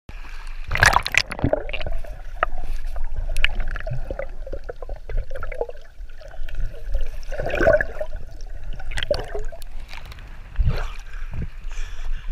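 Sea water splashing and gurgling around an action camera held at the surface as it dips under and comes back up, with irregular splashes and knocks over a low rumble.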